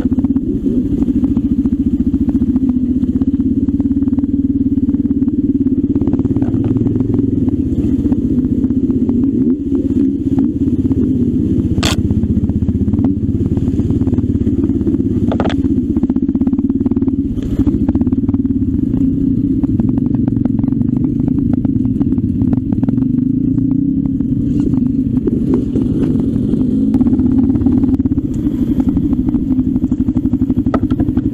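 Off-road trail motorcycle engine running steadily, heard close up from on board the moving bike. About halfway through there are two sharp knocks.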